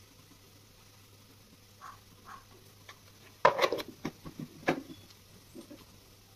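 Kitchen dishes and utensils clattering: a few faint ticks, then, a little past halfway, a quick run of sharp knocks and clinks that starts loudest and trails off.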